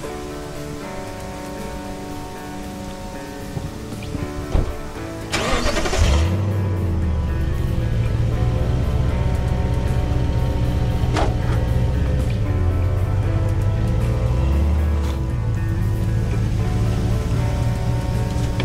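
Background music over a Toyota Tundra pickup: a door thumps shut about four and a half seconds in, a short burst of noise follows as the engine starts, and from then on the truck runs and pulls away under the music.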